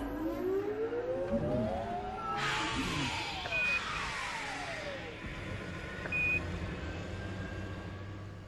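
Electronic sci-fi sound effects: many overlapping synthesized tones sliding up and down, with a short high beep twice, slowly fading.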